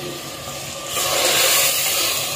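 Chopped tomatoes sizzling in hot oil with chicken in an earthenware handi as they are stirred with a wooden spoon. The sizzle swells sharply about a second in and holds steady after that.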